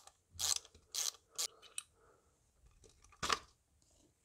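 Small hand ratchet clicking in short bursts as it unscrews the screws holding the mass airflow sensor in its plastic housing, with a louder scrape about three seconds in as the sensor comes out.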